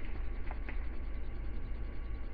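Steady low hum with two faint, light clicks about half a second in, from handling the straps and fittings of military web gear.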